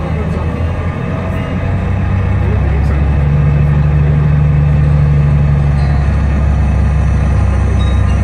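Tour bus engine running with a steady low drone and road noise inside the cabin, growing a little louder about two seconds in, with eerie music playing over it.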